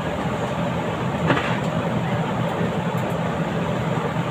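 A steady low machine hum, even in level throughout, with a brief faint sound about a second in.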